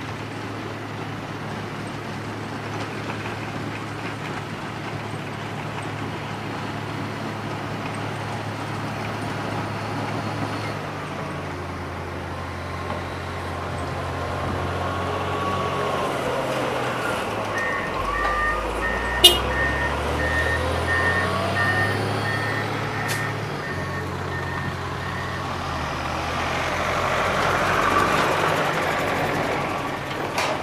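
Komatsu GD655 motor grader's diesel engine running as the grader drives up and passes close by, its pitch shifting as it nears. Partway through there is a run of evenly spaced electronic beeps and one sharp click. A truck drives past, loudest near the end.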